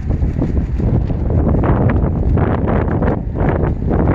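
Wind buffeting the camera microphone: a loud, low, gusting noise that rises and falls.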